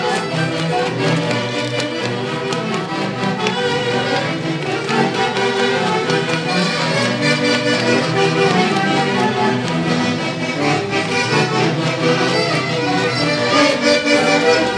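Huaylarsh dance music played by a Huancayo orquesta típica, with violin and reed instruments carrying the melody over a steady, driving rhythm.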